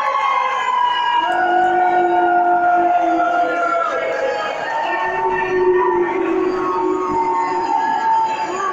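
A slow sung melody in long held notes, each lasting a second or more and stepping from one pitch to the next.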